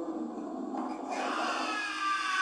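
Cartoon giant-ape roar from an anime soundtrack, growling and swelling into a harsher, noisier roar about a second in.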